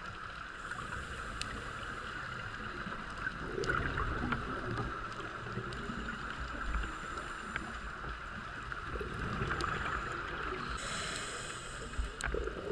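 Underwater ambient noise picked up by a submerged camera: a steady hiss with a low rumble and scattered faint clicks. A brief rush of higher hiss comes near the end.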